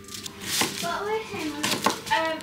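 Low indistinct voices in a small room, with a few light clinks of kitchen utensils, about half a second in and again near the end.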